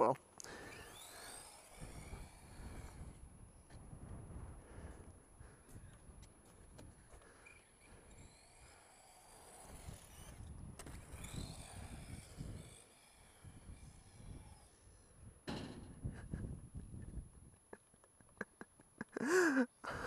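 Electric radio-controlled car driving over concrete skatepark ramps, heard faintly: its motor whine rises and falls in pitch with the throttle, over a low rumble. There is a short louder sound about three quarters of the way through.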